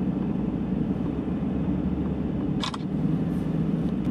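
Steady low rumble of a car's engine and road noise heard inside the taxi's cabin, with one brief click about two-thirds of the way through.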